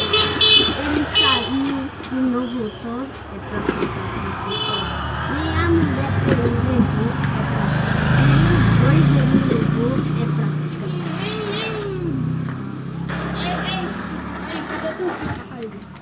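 A motor vehicle passing along the street: a low engine hum builds, is loudest about eight seconds in, then fades. Children's voices chatter over it throughout.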